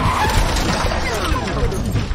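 A car speeding past, its engine note falling in pitch as it goes by.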